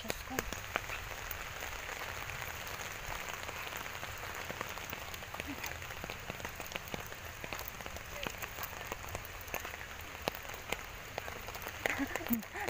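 Steady rain falling, with many sharp drop hits ticking on the umbrella overhead.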